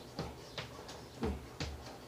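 Sneakers stepping and scuffing on a wooden floor in a quick, even dance rhythm, several short thuds and knocks about three a second. A man calls "boom" on the beat about a second in.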